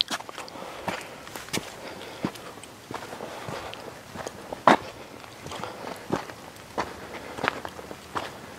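Footsteps on a rocky red-dirt trail, irregular steps about one and a half a second, with one louder step about halfway through.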